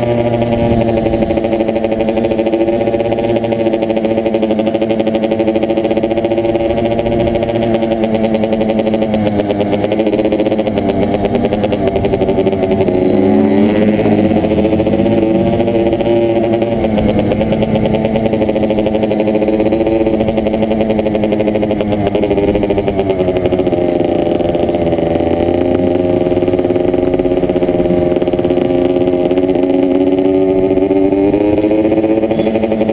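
Dirt bike engine running at a moderate, fairly steady throttle as the bike rides along, heard from a helmet-mounted camera. Its pitch wavers and dips through the middle and climbs again near the end.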